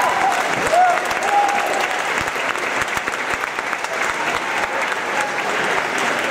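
Audience applauding steadily, with a few whoops from the crowd in the first second and a half.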